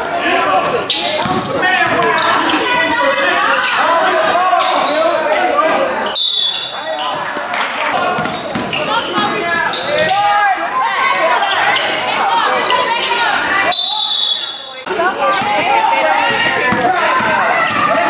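Gym game sound: many voices shouting and calling from the players and sidelines, with a basketball being dribbled on the hardwood court, in a large echoing hall. The din thins out briefly twice.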